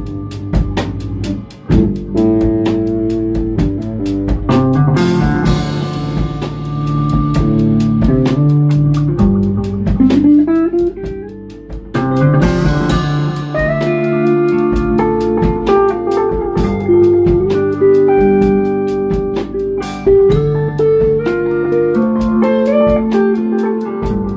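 Instrumental blues improvisation played on guitars, bass guitar and drum kit, with a rising pitch glide about ten seconds in.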